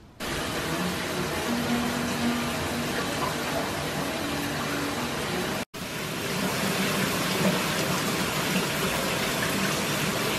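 Shower running: a steady hiss of water spray in a tiled shower, cut off for an instant a little past halfway and then going on as before.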